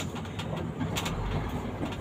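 Engine and road noise inside the cab of a moving truck: a steady low rumble, with a couple of light clicks about a second apart.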